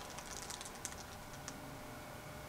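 Faint, scattered light clicks and rustles of a printed cloth dupatta being handled and spread out by hand.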